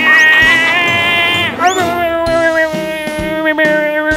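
A cartoon duck character's long, buzzy, nasal held cry. It holds one note for about a second and a half, slides up briefly, then holds a second, lower note to the end.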